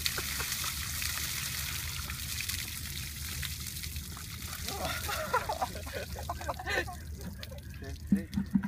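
Water poured from a large plastic drum over a seated person's head, splashing onto the concrete: a steady hiss that tails off about halfway through.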